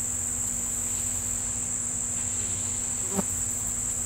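Steady, high-pitched drone of an outdoor insect chorus, with a single short click about three seconds in.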